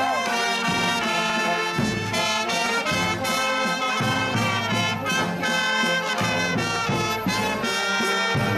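Live street band playing brass-led music, horns with an accordion, over a steady beat.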